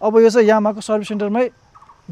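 A man talking quickly, in speech the recogniser did not write down, stopping about one and a half seconds in.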